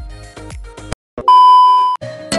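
Background music that stops about a second in, then, after a brief silence, a loud, steady electronic beep held at one pitch for under a second and cut off abruptly.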